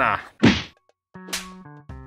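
A man coughs once, then, about a second in, a short electronic jingle of stepped synth notes starts with a whoosh: the show's logo sting.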